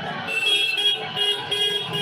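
A vehicle horn sounding a quick run of short beeps, starting a moment in, over the low rumble of street traffic.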